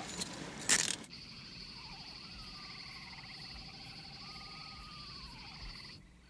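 Night-time chorus of insects and frogs: a steady high insect drone with a trill beneath it and a few slow gliding calls. In the first second, before it starts, a noisier passage with one loud clatter.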